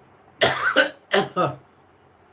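A man coughing, a short run of two or three coughs over about a second.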